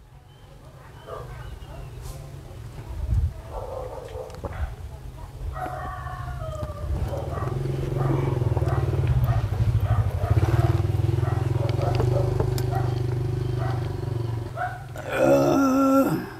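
A low, steady motor hum that builds over the first few seconds and fades out shortly before the end, with faint voices underneath.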